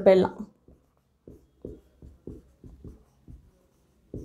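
Marker pen writing on a whiteboard: a string of short, faint strokes as an equation is written out.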